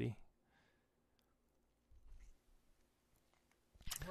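Near silence between speakers, with a faint short noise about halfway through and voices coming back in at the very end.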